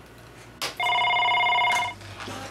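Desk telephone ringing once: a steady electronic ring about a second long, just after a short click.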